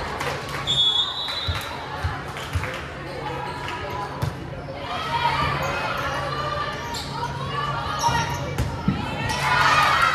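Volleyball rally in a gym hall: the ball is struck several times with sharp hits that echo in the hall, while players shout to each other, most in the second half.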